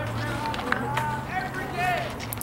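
People's voices calling out, with a sharp click about three-quarters of a second in and a steady low hum underneath.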